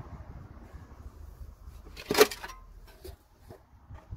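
Gear being handled: one sharp knock with a short ring a little over two seconds in, followed by a few light clicks, over a faint steady background.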